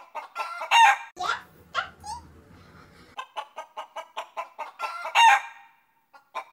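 Hen clucking and squawking: a loud squawk about a second in, a run of quick clucks at about five a second in the middle, and another loud squawk near the end.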